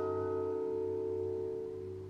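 Orchestra holding a sustained chord that slowly dies away.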